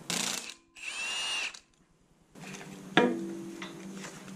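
Milwaukee Fuel cordless impact wrench hammering briefly on a flywheel bolt, then spinning with a whine that rises and falls, loosening the bolts on its second setting. A sharp metallic knock with a short ring follows about three seconds in.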